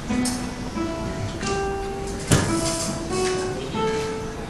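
A folk string ensemble of acoustic guitars and other plucked strings playing a slow melody in held notes, plausibly a lullaby, with one sharp, loud strum a little past halfway.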